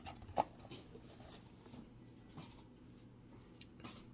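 Cardboard snack-kit box being handled and opened: a couple of sharp clicks and scrapes in the first half second, then faint, sparse rustling and ticks.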